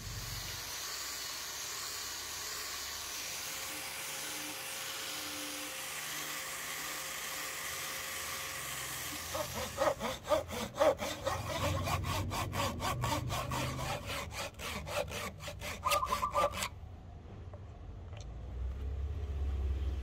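An angle grinder with a foam sanding pad runs steadily against a wooden axe handle, a continuous even hiss. About halfway through it gives way to a Japanese hand saw cutting a thin piece of wood in quick, even strokes, which stop abruptly a few seconds before the end.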